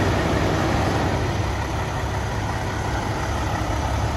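Semi-truck diesel engine idling steadily.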